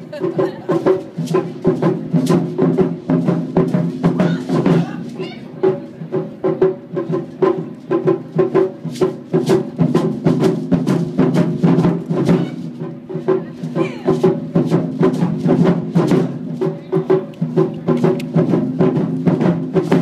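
Japanese taiko ensemble playing barrel-shaped taiko drums on slanted stands with sticks: a fast, dense, unbroken rhythm of deep drum strokes.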